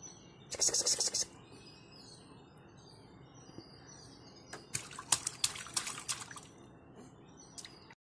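Light splashing of water in a plastic bath tub as a toddler plays with hands in it, in two short bouts of crackly splashes about half a second in and around five seconds in, with faint bird chirps behind.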